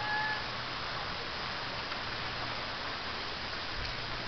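Steady outdoor background hiss with no distinct event, apart from a brief, thin whistle-like tone in the first half-second.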